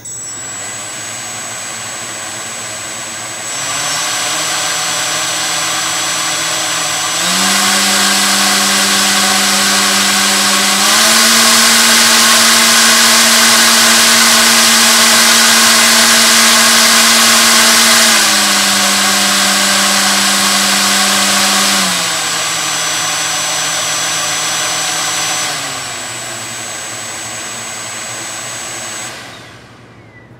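Brushless motor and propeller on a thrust stand running an automated throttle step test. The whine jumps up in pitch and loudness in four abrupt steps about three and a half seconds apart and holds at the top for about seven seconds. It then steps back down in pitch and stops near the end.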